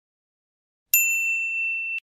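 A single bright bell ding, like a notification chime, struck about a second in and ringing steadily for about a second before cutting off suddenly.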